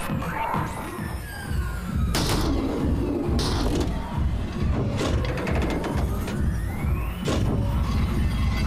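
Ride-film soundtrack: electronic music with a steady pulsing bass beat, overlaid with sound effects. A falling sweep comes in the first two seconds, sudden hits land about four times, and a rising sweep leads into the last hit near the end.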